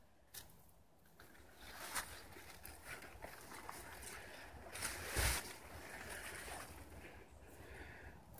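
Faint rustling and handling noise as the camera moves through the pumpkin foliage, with one louder rush about five seconds in.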